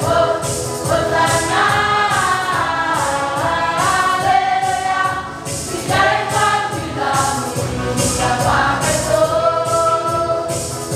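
A group singing a gospel hymn together, accompanied by an electronic keyboard, with a regular high shaking sound keeping the beat.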